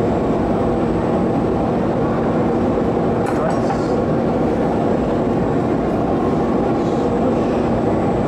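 Steady roar of a gas-fired glory hole and the hot shop's exhaust, with a faint steady hum under it and a few light clicks about three seconds in.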